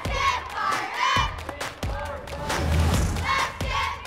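Several children's voices shouting and yelling in short, high-pitched calls that overlap one after another. A few sharp hits sound among them.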